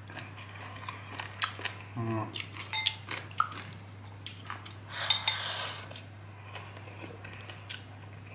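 Chopsticks clicking and scraping against a ceramic rice bowl as rice is shovelled into the mouth: scattered sharp clicks, with a longer rasp about five seconds in.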